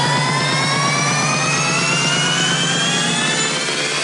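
Electronic dance music build-up: a synth sweep rising steadily in pitch over a fast repeating low note.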